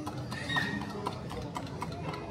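A quick run of light clicks or taps, about four or five a second, starting about half a second in, over steady background hubbub.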